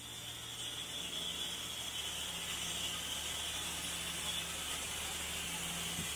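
Air separation plant machinery running in its hall: a steady low hum with an even hiss over it, unchanging throughout.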